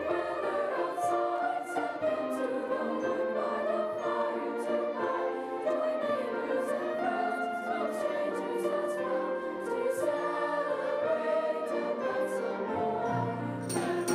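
High school choir singing with a full orchestra accompanying. Lower-pitched instruments swell in strongly near the end.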